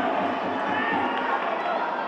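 Pitch-side sound of a rugby league match: players shouting and calling to each other over a thin crowd murmur, with no single event standing out.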